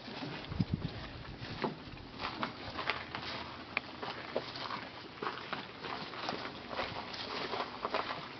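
Footsteps on a dry grass and dirt path: irregular soft crunches and clicks, several a second, with a few brief thin tones among them.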